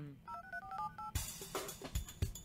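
A quick run of about six telephone keypad tones on the phone line, each a short two-note beep, then crackly line noise with a few knocks.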